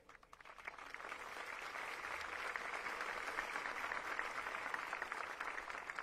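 A large crowd applauding, swelling over the first couple of seconds and then holding steady.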